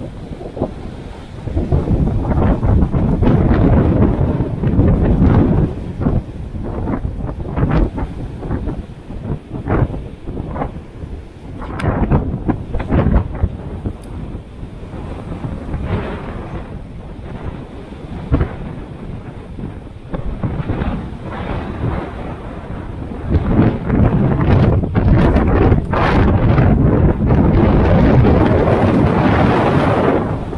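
Heavy surf breaking against rocks, with strong wind buffeting the microphone: a loud, low noise that swells and falls in surges, loudest a couple of seconds in and again over the last several seconds.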